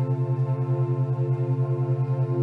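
Alpha-wave binaural-beat track: a low steady hum pulsing about nine times a second, under sustained ambient drone tones.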